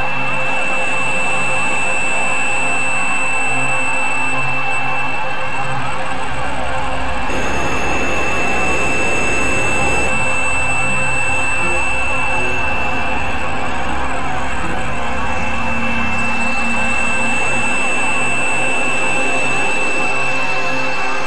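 Experimental electronic drone music from synthesizers: a dense, noisy, steady drone with a high held tone over it. A deeper rumble joins about seven seconds in.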